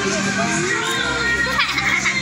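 Children's voices chattering and calling out over background music.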